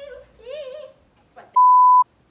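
A woman's voice briefly, then an edited-in censor bleep: a loud, steady single tone at about 1 kHz lasting about half a second near the end, starting and stopping abruptly.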